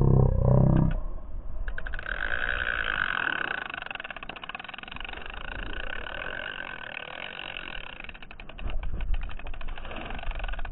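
Spinning reel clicking rapidly in a long, dense run starting about two seconds in, as a bass runs off with the shiner bait. A low rumble comes in the first second.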